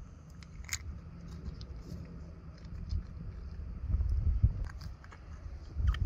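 Faint clicks and scrapes of a replaceable-blade Havalon knife and metal forceps working around the brain stem at the base of a deer's skull, over a low rumble. The sharpest click comes just under a second in, and heavier low thumps come around four seconds in and again just before the end.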